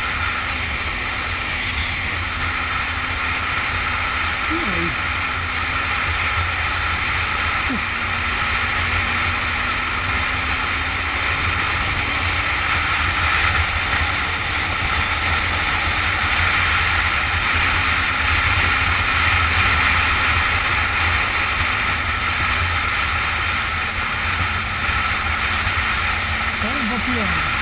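Steady wind rush over the microphone of a camera riding on a moving motorcycle, with a motorcycle engine running at a steady pitch underneath.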